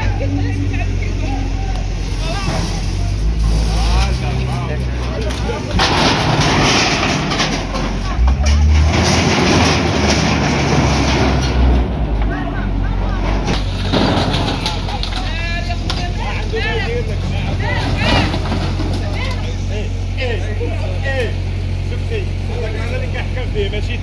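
Wheel loader's diesel engine running steadily as its bucket knocks down a makeshift shed, with a stretch of crashing and scraping of wood, sheet metal and brick in the middle. Voices talk over it.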